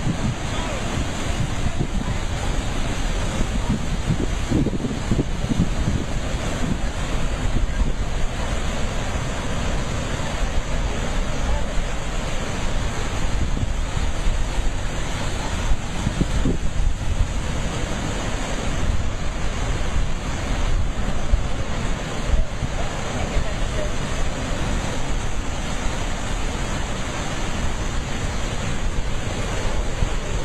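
Rough sea surf churning and breaking against rocks, a steady rushing roar of water, with wind buffeting the microphone.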